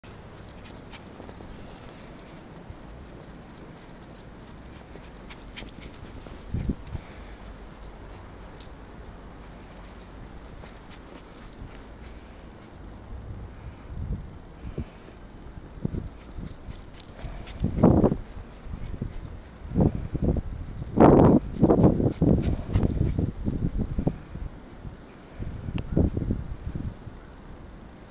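Schipperke barking several short times in the second half, among irregular low thuds and rumble.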